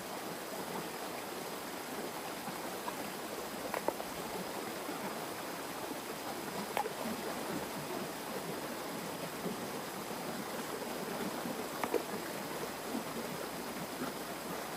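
Shallow stream water rushing steadily over a small cascade of rocks, with a few short splashes as hands work among the stones in the current.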